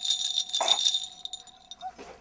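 Small jingle bells on a handheld ring rattle shaken, a bright jingling that dies away after about a second and a half.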